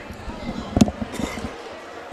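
Several basketballs bouncing on a hardwood gym floor during warm-ups: irregular bounces, the loudest about a second in, with people chattering in the background.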